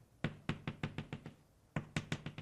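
Chalk tapping against a blackboard in a quick even series of about eight taps a second, with a short pause partway through, as a dotted line is marked out.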